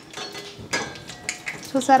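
Oil sizzling around food frying in a wire-mesh fry basket in a steel pan, with a couple of light metal clinks from the basket against the pan about a second in. Speech starts near the end.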